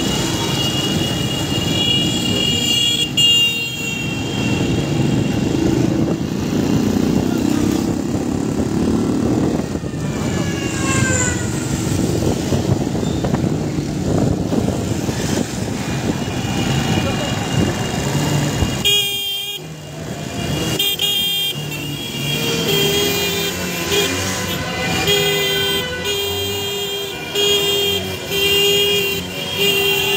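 Celebratory car horns honking in street traffic, over the running engine of the motorcycle carrying the microphone. In the last third the honks come in a quick rhythmic pattern of short blasts, about two a second.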